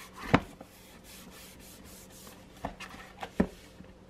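Paper notebook being handled: pages and cover brushing and rubbing under the hands, with a sharp tap about a third of a second in and another near the end.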